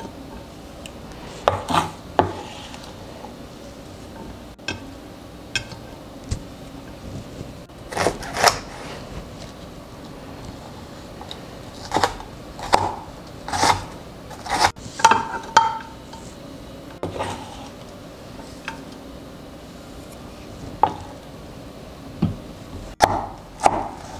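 Chef's knife knocking on a wooden cutting board in scattered, irregular strokes as bell peppers are diced, with a quick run of strokes about two-thirds of the way through. Also heard are scrapes and light clinks as diced pepper is moved into a glass dish.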